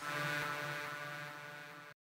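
The closing held synth chord of a techno dance remix dying away, its steady tones fading gradually until the sound cuts off just before the end.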